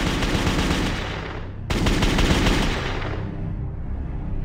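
Sound effect of rapid automatic gunfire: a dense burst that cuts off sharply just under two seconds in, then a second burst that starts at once and dies away by about three seconds.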